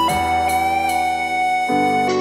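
Serum software synthesizer playing a MIDI melody with a pitch bend. Just after the start a note slides into place and is held over sustained chords, which change near the end.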